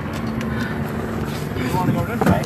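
Steady running and road noise of a small open vehicle carrying passengers along a street, with a faint low hum.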